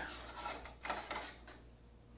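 Faint scraping and rubbing of an aluminum solar panel mounting bracket against a T-slot aluminum extrusion, in two short strokes about half a second and a second in.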